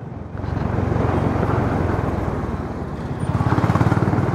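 Motorcycle engine running steadily at road speed, a low pulsing rumble with road and air noise; it grows louder shortly after the start and again near the end.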